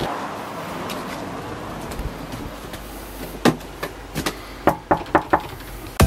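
Steady background hiss, then a series of about seven sharp knocks a few tenths of a second apart in the second half.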